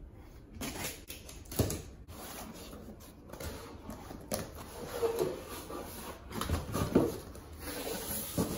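Cardboard being handled as a flat desk carton is opened: irregular rustling and scraping with scattered knocks and a few brief squeaky scrapes as the cardboard lid is slid and lifted off.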